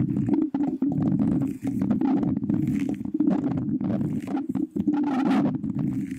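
A perfume bottle cap rubbed and scratched against a microphone's grille at close range. It gives a steady low rumble broken by many small clicks.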